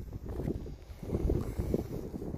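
Wind buffeting a phone's microphone outdoors: an uneven low rumble that comes and goes in gusts.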